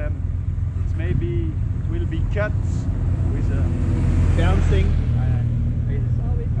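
Motorcycle engine idling steadily, a low even rumble, with indistinct men's voices talking over it in short snatches.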